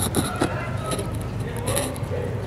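Steady low rumble of background road traffic, with a few sharp clicks about half a second in and faint voices.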